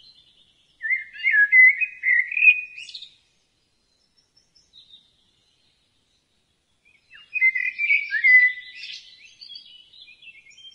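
A songbird singing: two loud warbled phrases of quickly changing pitch, the first about a second in and the second about seven seconds in, with fainter chirps between and after them.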